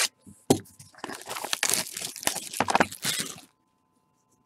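Plastic wrap being torn and crinkled off a sealed trading card box: a sharp crack about half a second in, then dense crinkling for about two and a half seconds that stops suddenly.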